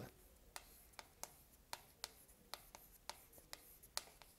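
Chalk writing on a chalkboard: a string of faint, sharp ticks at an uneven pace as each stroke of the characters is made.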